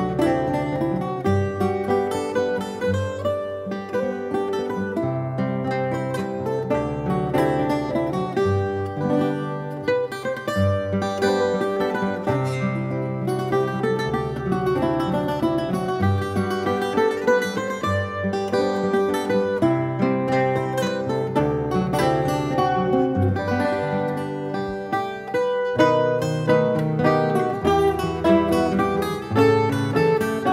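A Portuguese guitar and a classical guitar playing together: a quick plucked melody over held bass notes that change every second or two.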